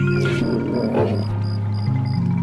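Background music with a regular light ticking pulse. About a quarter of a second in comes a low animal call lasting about a second, the voice given to the Moeritherium.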